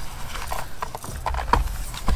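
Handmade journal pages being turned and pressed flat by hand: paper rustling with several light, irregular taps and knocks.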